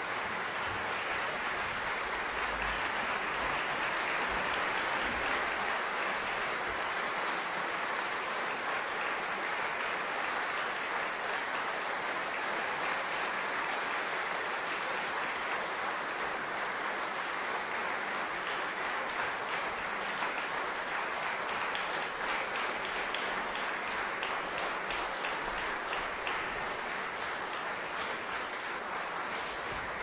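Concert audience applauding, a dense and steady ovation; in the second half it thins slightly and single claps stand out more.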